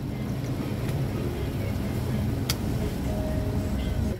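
A steady low rumble that cuts off suddenly at the end, with a single sharp click about two and a half seconds in.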